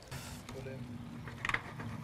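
Chopped cabbage and spring onions going into a hot frying pan: a short sizzle at the start, then a low steady hum with a few light clicks.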